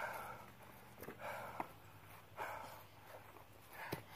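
Faint heavy breathing from exertion: a soft, noisy breath about every second, with a couple of small clicks.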